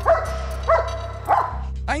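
A German Shepherd sniffer dog barking three times, about half a second apart, excited as it alerts on a suitcase with suspicious contents.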